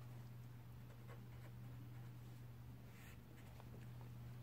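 Faint scratching strokes of a marker pen writing on paper, over a steady low hum.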